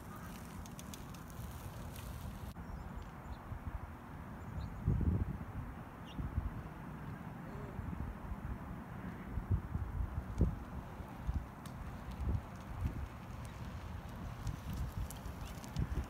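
Wind buffeting the camera's microphone: a low rumble that gusts up and down, with a few dull thumps.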